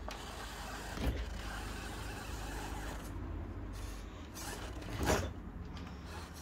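Electric drivetrain of a 1/10-scale RC rock crawler running steadily as it creeps up a plywood ramp, with two sharp knocks about a second in and near the end, the second the louder.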